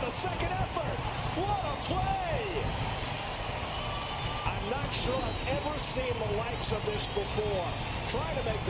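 Baseball TV broadcast audio: a commentator's voice, fainter than the room mic, over a steady stadium crowd noise, with a few short sharp knocks about five to seven seconds in.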